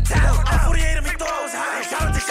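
New York drill freestyle: a rapper rapping over a drill beat with heavy deep bass. The bass drops out briefly near the end while the vocal carries on.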